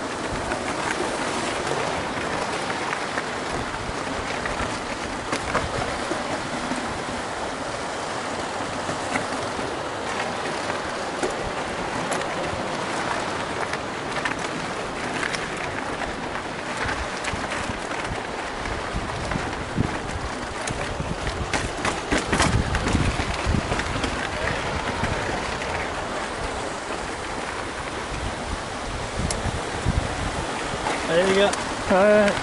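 Mountain bike riding over rough dirt and stony singletrack: steady wind rush on the camera microphone with tyres crackling over gravel and the bike rattling. A run of heavier thumps comes about two-thirds of the way through, as the bike takes hard bumps.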